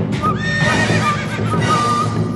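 A horse whinnying, one long warbling neigh starting about half a second in, over music.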